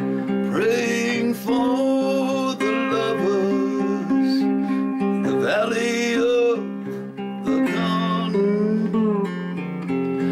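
Instrumental slide melody on a 3-string cigar box guitar, played with a porcelain slide through a vintage Teisco gold foil pickup. Plucked notes glide up into pitch over steadily ringing lower strings.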